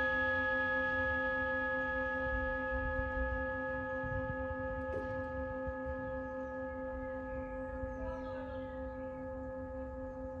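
A long ringing tone made of several steady pitches together, slowly fading, like a struck metal bowl or bell ringing down. A low rumble runs underneath.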